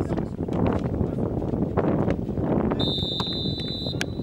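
Referee's whistle blown in one steady blast of about a second near the end, over shouting voices from the pitch and crowd.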